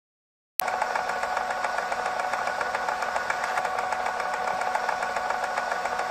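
After a brief silence, a steady mechanical drone with a rapid ticking rattle and a held tone cuts in abruptly about half a second in, like a running engine or machinery, used as the sound of a production logo sting.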